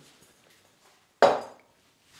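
A glass mixing bowl set down on a stone worktop: one sharp knock with a brief high ring, a little over a second in.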